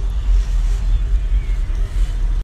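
Low, steady rumble of car engines running nearby.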